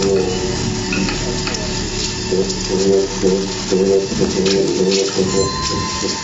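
Live improvised music for upright double bass and laptop electronics: scratchy, clicking textures with a low pitched figure pulsing about twice a second from around two seconds in, and a thin steady tone coming in near the end.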